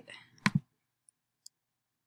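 Computer mouse clicking: a sharp double click about half a second in, then two faint ticks a moment later.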